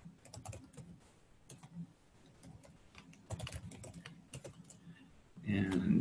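Typing on a computer keyboard: an irregular run of key clicks as a line of code is entered. Near the end a short, louder stretch of voice comes in.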